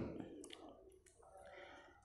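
Near silence in a pause between spoken sentences, with a few faint clicks about half a second in.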